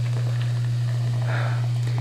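Steady low electrical hum, with faint fizzing and trickling of carbonated Diet Coke being poured from a can into a plastic tumbler.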